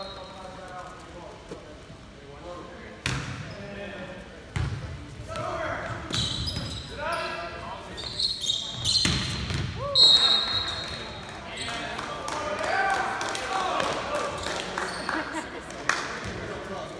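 Volleyball rally in a gym: sharp ball contacts on serve, pass and spike, with sneakers squeaking on the hardwood and a short high whistle about ten seconds in, the loudest moment. Players and spectators then shout and cheer as the point ends.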